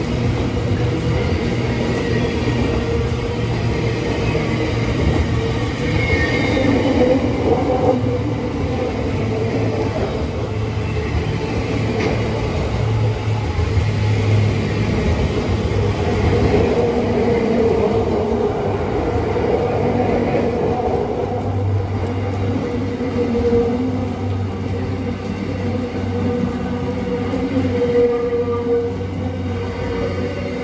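Freight train's loaded container wagons rolling past on the rails in a steady, continuous rumble of wheels, with high squealing tones coming and going.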